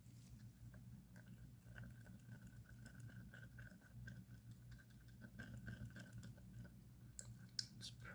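Wooden stir stick mixing epoxy resin in a plastic measuring cup: faint, irregular scraping ticks against the cup, with a few sharper clicks near the end, over a faint steady hum.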